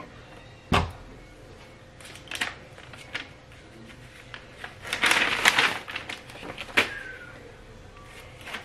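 Paper being handled and peeled off a freshly heat-pressed garment: scattered crinkles and clicks, a sharp knock about a second in, and the loudest stretch of paper rustling a little after halfway.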